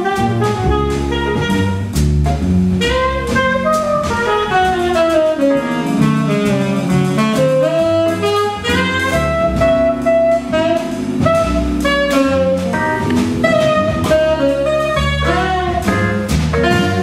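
Tenor saxophone playing a jazz solo in fast, winding runs that climb and fall, over a drum kit with cymbals.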